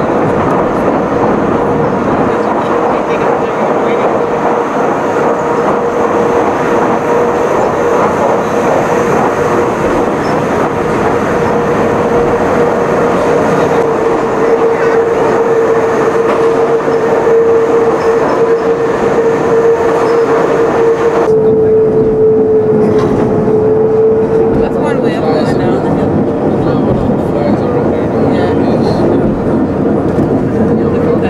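Electric cogwheel railcar of the Pilatus rack railway running, heard from inside: a steady rumbling noise with a constant mid-pitched drive whine. About two-thirds of the way through the sound turns duller and the whine wavers slightly lower.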